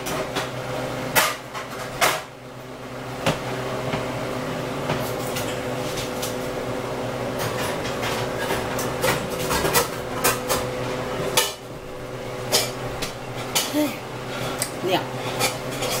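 Kitchen clatter: metal pans and utensils clinking and knocking at irregular intervals, several sharp knocks in the first few seconds and a busier run near the end. A steady hum runs underneath.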